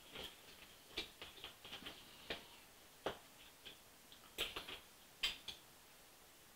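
Faint, irregular small clicks and ticks, some in quick little clusters: handling noise of tools and materials at a fly-tying vise.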